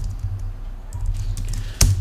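Computer keyboard being typed on: a run of light key clicks over a low steady hum, with one sharp, louder click near the end.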